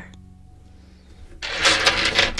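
Quiet at first, then, about a second and a half in, a loud rustling, scraping handling noise with a few sharp clicks, as of small objects being rummaged through by hand.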